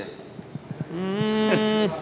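A man's voice holding one steady, level note for about a second, starting about a second in.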